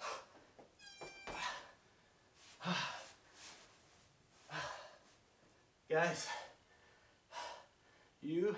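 A man breathing hard and gasping after strenuous exercise, with loud exhalations and sighs about once a second, some of them voiced.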